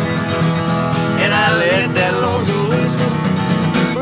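Two acoustic guitars, a Martin 000-28H and a Langejans FM-6, strumming the closing bars of a country song in a train-beat rhythm. About a second in, a wordless wavering voice joins above the guitars for a couple of seconds.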